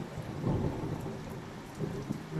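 Heavy rain pouring down on a tiled patio, with a low rumble of thunder swelling about half a second in and then fading.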